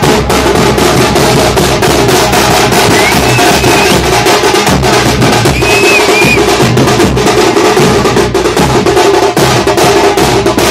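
A group of drums pounding out loud, fast, dense beats without a break. Two short whistles cut through, about three seconds in and again around six seconds.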